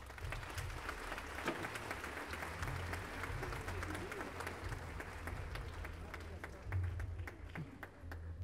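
Audience applauding, many hands clapping that thin out toward the end.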